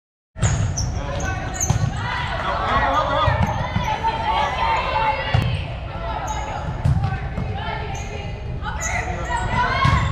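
Indoor volleyball rally: the ball is struck sharply about four times, a few seconds apart, while players and spectators call out in a large echoing gym.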